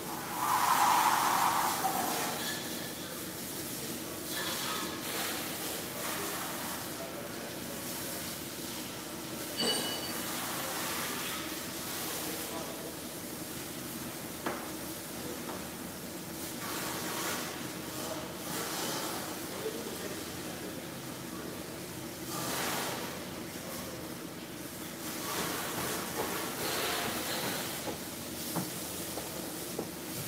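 Pressure-washer spray hissing against a semi truck, the spray swelling and easing in stretches as the wand moves, over a steady low hum.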